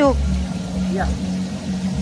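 Water pouring and bubbling into a restaurant's live-fish tank over a steady low machine hum.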